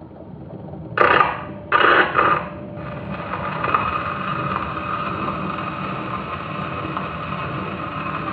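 Victrola acoustic phonograph starting a 78 rpm Victor record: two loud scraping bursts about one and two seconds in as the Tungs-Tone stylus is set onto the spinning disc, then steady surface hiss as the stylus runs in the lead-in groove before the music.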